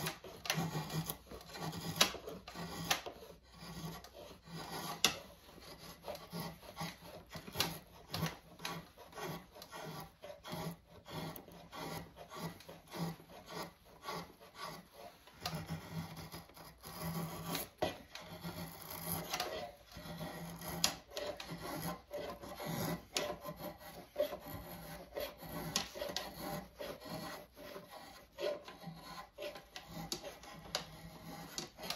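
Hand rasp filing a wooden axe handle in repeated push strokes, about one a second, each a dry scrape with an occasional sharper click. The wood is being taken down flat at the eye end so the axe head seats with good contact.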